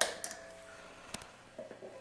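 A true-bypass footswitch on a Q-filter (auto-wah) guitar pedal clicking once about a second in as it is pressed to switch the effect on, over a faint hiss.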